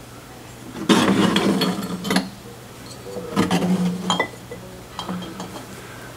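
Glazed ceramic vases being moved on a shelf, chinking and scraping against each other and the shelf in two bouts, about a second in and again at about three and a half seconds, with a few light clinks.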